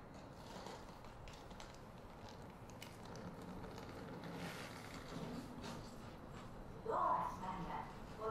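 Quiet cabin of an E131 series electric train standing still, with a low steady hum and a few faint clicks. About seven seconds in there is a short, louder, voice-like sound.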